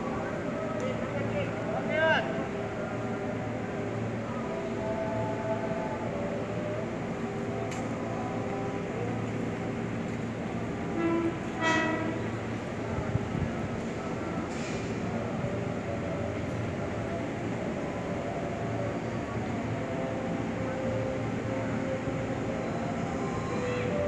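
Steady ambience of a busy commuter-rail station platform, with distant voices and a commuter train approaching far down the line. A few brief pitched sounds stand out, about two seconds in and again about twelve seconds in.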